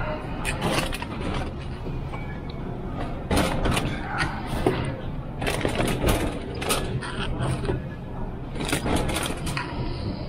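Rustling and scraping handling noise in irregular clusters, from clothing and hands brushing near the microphone, over a steady low hum of store ambience.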